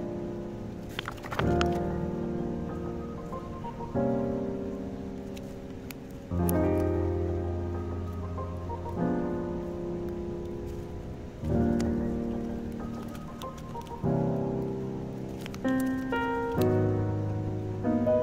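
Background music of slow, sustained piano chords, changing about every two to three seconds, with a few light clicks.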